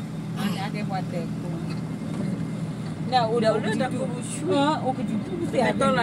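A vehicle's engine and road noise droning steadily, heard from inside the cabin, with people talking over it from about three seconds in.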